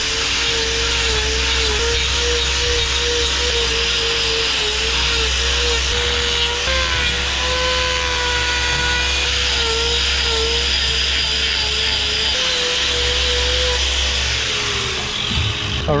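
Angle grinder with a hoof-trimming disc grinding down a cow's claw horn, its motor whine dipping and recovering as the disc is pressed in and worked back and forth. This is the preliminary trim, taking the claw to the right length, thickness and balance. The grinder winds down near the end.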